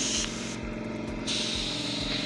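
Airbrush spraying white fabric paint, a steady hiss of compressed air and paint. Its upper hiss dulls for a moment about half a second in, then comes back.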